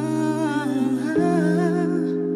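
Slow instrumental intro of a live pop ballad: sustained keyboard chords that change to a new chord about a second in, under a soft, wavering lead melody.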